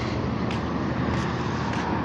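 Steady road traffic noise at a busy intersection: a continuous rush of engines and tyres with a low engine hum underneath.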